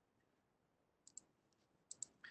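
Near silence broken by a few faint computer mouse clicks: a quick pair about a second in and another pair near the end, as the presentation slide is advanced.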